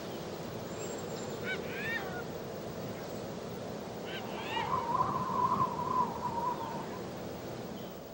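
Outdoor ambience between songs: a few short bird calls, then one longer wavering call, over a steady rushing background like surf, fading out at the end.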